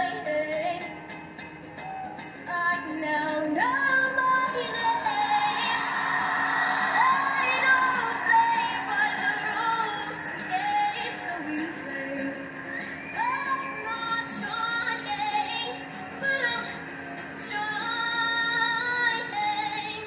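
A young girl singing an original song to her own ukulele, played back through a TV's speakers and picked up in the room.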